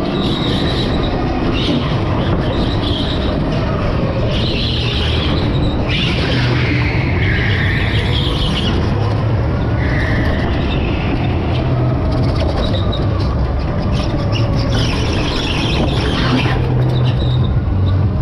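Electric go-kart driven at speed: a steady loud low rumble with several high tyre squeals, each a second or two long, as the kart goes through corners.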